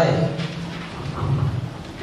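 Rumble and rustling noise from a handheld microphone being passed from one speaker to another, through the hall's sound system, after the last word of a sentence ends.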